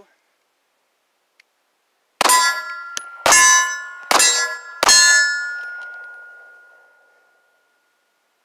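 Taurus G2C 9 mm pistol firing four shots about a second apart, starting about two seconds in, with light handloaded 115-grain rounds being tried to see whether they cycle the action. Each shot leaves a ringing tone that fades over the next couple of seconds.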